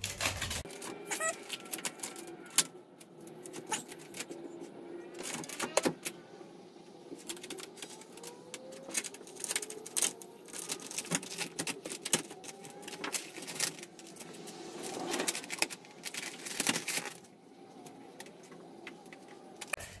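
Vinyl wrap film crinkling and crackling as it is lifted, stretched and smoothed by hand over a car door, in irregular sharp clicks that bunch together in a few busier stretches.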